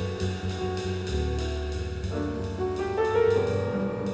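Live jazz piano trio playing: acoustic grand piano, upright double bass and drum kit, with a cymbal keeping a steady beat over the bass and piano notes.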